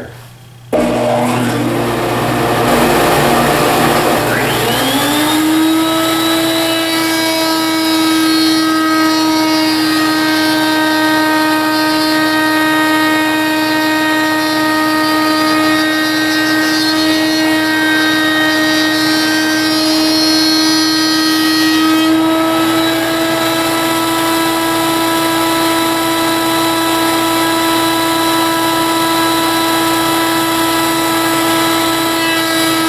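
A table-mounted router with a dovetail bit switches on about a second in. Its whine rises in pitch for a few seconds as it spins up, then it runs at a steady pitch while a board is fed past the bit to cut dovetail keys.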